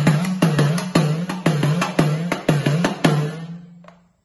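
A rope-laced folk drum beaten in a quick, even rhythm, each stroke carrying a low note that dips in pitch and comes back. The beats fade out about three and a half seconds in, closing the devotional song.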